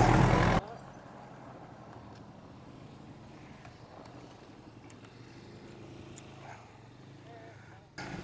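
A steady noise that cuts off sharply just over half a second in, followed by faint, quiet outdoor background with nothing distinct in it.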